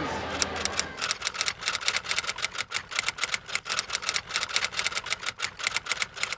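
Rapid typing clicks in a typewriter-style sound effect, about six keystrokes a second, as the on-screen question is typed out.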